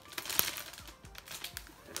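Cellophane gift wrap crinkling and crackling as it is handled, with one sharp crackle about half a second in.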